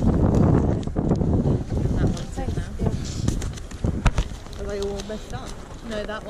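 Wind buffeting the microphone, with sharp knocks and rustles from vinyl records in plastic sleeves being handled; people's voices are heard near the end.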